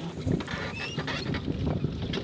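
Small birds chirping now and then, short high whistles over a low outdoor rumble.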